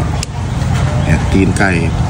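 A man's voice speaking Thai briefly near the end, over a steady low rumble, with one sharp click about a quarter second in.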